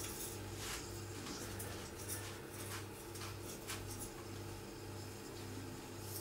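Metal apple corer being worked into a Golden apple, giving faint, repeated scraping strokes as it cuts through the flesh. Under it runs a low hum that pulses about twice a second.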